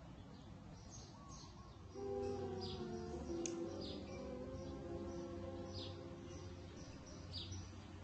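Faint bird chirps, short falling high notes repeating about once a second, over soft sustained musical tones that come in about two seconds in.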